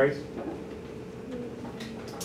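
Quiet classroom room tone with a faint steady hum, after the end of a spoken word at the very start; a faint, low voice murmurs about a second and a half in.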